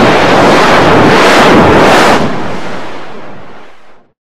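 Loud, harsh wall of digitally distorted noise from a heavily effected audio edit. It holds full level for about two seconds, then fades steadily and cuts off at the end.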